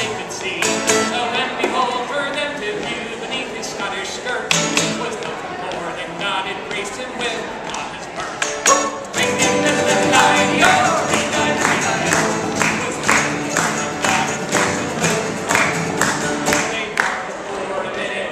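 A live acoustic Celtic folk band plays an instrumental break between verses: strummed acoustic guitars, a mandolin and a button accordion in a steady, driving rhythm. The music gets fuller and louder about nine seconds in.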